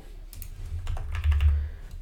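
Light clicks and taps of a computer mouse and keyboard, several scattered through the two seconds, with a short low rumble just past the middle.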